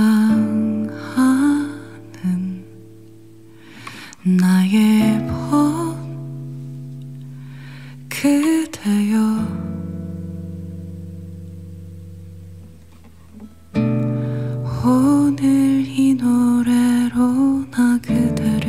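A woman singing a Korean song live over her own classical guitar. She sings in phrases, and the guitar chords ring on alone between them, longest for a few seconds past the middle before the voice comes back.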